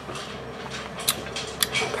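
A person sipping hot coffee from a mug, quiet sips with two brief sharp sounds about a second in.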